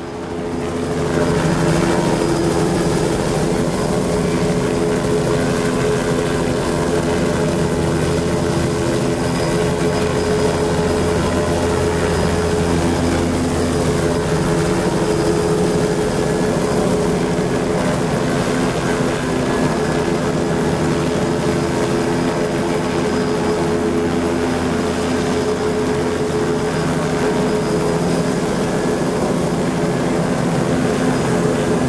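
Steady electronic drone of several held low tones over a rushing haze, swelling up about a second in.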